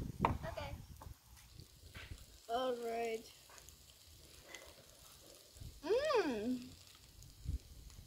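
Two drawn-out, wordless voice sounds of enjoyment while tasting food: the first held steady, the second rising and then falling in pitch.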